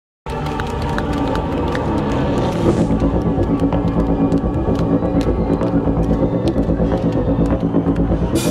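Live industrial band's song intro through a festival PA: low sustained tones with a steady throb about four times a second, before the drums come in.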